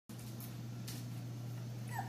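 A steady low hum with faint room noise, and a puppy giving one short high whine just before the end.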